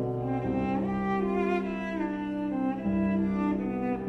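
Bowed cello playing a slow melody of long held notes, the line climbing about a second in.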